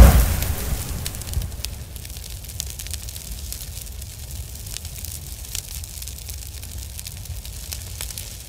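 Fire sound effect: a steady low rumble with scattered crackles and pops, opening on the fading tail of a loud boom in the first second or so.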